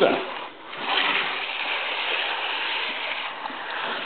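A steady hiss.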